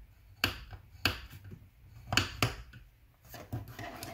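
Scoring stylus and cardstock strip on a Simply Score scoring board: several sharp, irregularly spaced clicks and taps as the strip is scored and handled.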